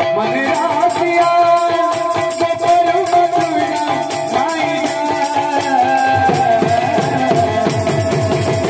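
Kirtan music: a steady held drone note under gliding sung lines, with hand-played barrel drums and jingling rattle-like percussion keeping a fast, even beat.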